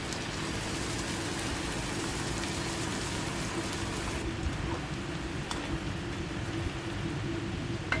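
Prawns sizzling and bubbling in a wok in freshly added sauce, a steady frying hiss, with a steady low hum underneath. A metal spatula clinks against the pan near the end.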